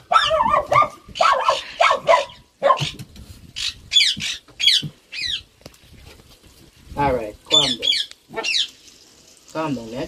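A small dog whining and yelping in a string of short, high-pitched cries that fall in pitch, while it is held wet and having its face fur trimmed with scissors.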